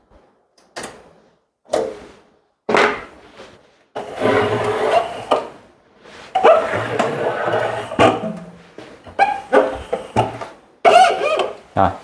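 A Denon DCD-1520AE CD player being switched off and turned around on a wooden shelf: a few short knocks, then two longer stretches of its case scraping across the wood, about four and six and a half seconds in.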